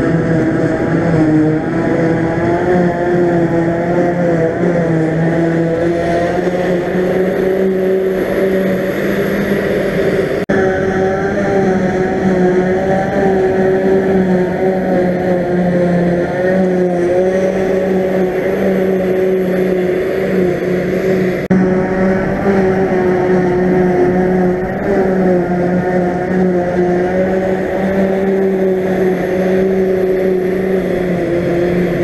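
Claas Jaguar 880 forage harvester running at working speed as it cuts and blows grass silage: a loud, steady machine drone, with a tractor running alongside. The drone shifts slightly about ten and twenty-one seconds in.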